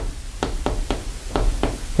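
Chalk striking a chalkboard as characters are written, a string of about seven short, sharp taps over two seconds.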